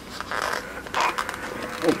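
Soft rustling and light scraping of a small doll sandal being pushed onto a baby doll's foot by hand, in faint scattered scratches.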